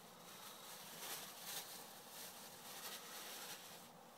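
Faint, irregular crinkling of a plastic bag being handled and opened.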